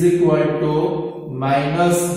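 A man's voice in two long, drawn-out phrases, held on steady pitches in a sing-song way, with a short break between them.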